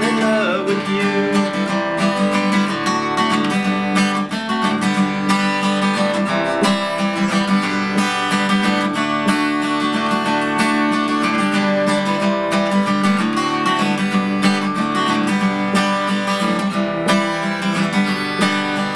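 Acoustic guitar strummed steadily through an instrumental break in a slow country song, with the guitar played out of tune.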